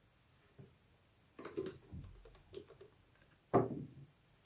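A glass panel being wiped with a microfiber cloth: scattered short rubbing and handling sounds, then a louder soft thump near the end as the cloth is put down.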